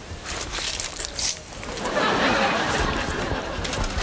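A man biting into and chewing a raw hot pepper, with short crunches in the first second or so, then a louder breathy, rushing noise from about two seconds in.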